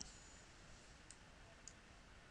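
Near silence: room tone, with two faint computer-mouse clicks, one about a second in and one just past the middle.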